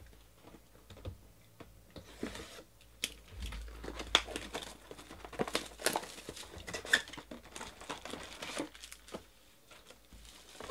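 Plastic shrink wrap being pulled and torn off a cardboard box of trading cards: dense crinkling and crackling with sharp snaps, starting about two seconds in and dying down near the end.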